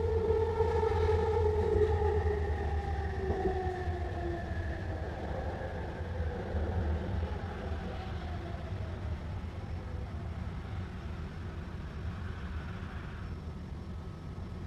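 Millennium Line SkyTrain car's linear induction motors whining, several tones falling steadily in pitch and fading out over about ten seconds as the train slows into a station, over a steady low rumble of the wheels on the guideway.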